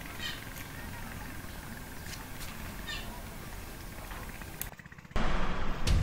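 Outdoor ambient hiss with a few faint, short, high chirps. It cuts off about 4.7 s in, and just after 5 s, louder guitar-led background music begins.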